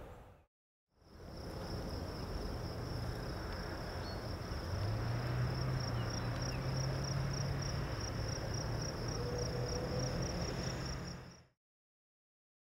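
A high, steady trill like an insect's, pulsing about four times a second over a low hum. It starts about a second in and fades out near the end.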